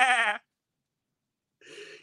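A man imitating a sheep: one bleat with a wavering pitch that stops about half a second in.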